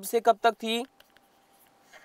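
A man's voice speaks for under a second. Then comes a quiet stretch with a couple of faint taps from a stylus writing on a pen tablet.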